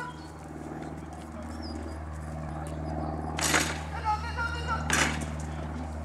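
A dog handler's two short calls to the dog, about three and a half and five seconds in, over a steady low hum.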